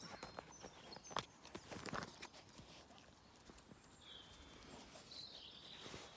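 Quiet rustling and a few soft clicks from small dogs being petted and rubbed up close, with a sharper click about a second in and a couple of faint high squeaks near the end.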